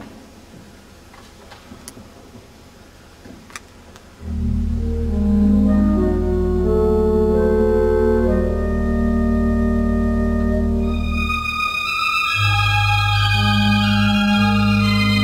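Rushworth & Dreaper pipe organ beginning to play about four seconds in: held chords over a strong low bass, the melody climbing into higher notes near the end. Before it starts, a couple of faint clicks.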